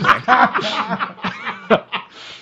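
Men laughing and chuckling, the short bursts of laughter overlapping one another.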